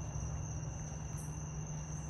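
Night insect chorus: a steady high-pitched trill with one brief louder high burst about a second in, over a low steady hum.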